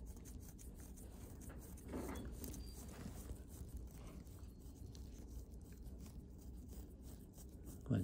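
Scalpel blade scraping dry, flaky dead skin off a healed venous ulcer on the foot: faint, continuous rasping made of many small scratches.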